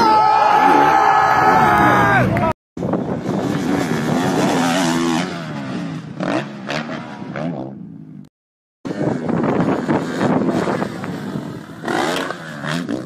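Motocross bike engines revving as riders take big jumps, in several short clips cut together, with spectators' voices and shouts mixed in. The first clip has a held high engine note that drops away about two and a half seconds in.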